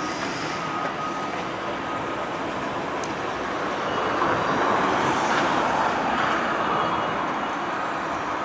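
Street traffic noise that swells to its loudest between about four and six seconds in, as a vehicle passes, then eases off.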